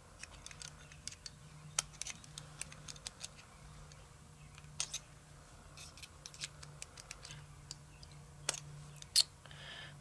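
Small metallic clicks and taps as the internal parts of a Bosch diesel injector (spring, spring seat, pressure pin) are worked loose with a brass pick and handled. The clicks come irregularly, the sharpest near the end, over a faint steady low hum.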